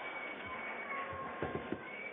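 Theatre audience cheering, with whistles and high drawn-out whoops over a wash of crowd noise, and a few low thumps about one and a half seconds in.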